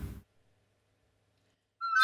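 Silence, then near the end a recorder starts one loud, high note that wavers and steps up in pitch.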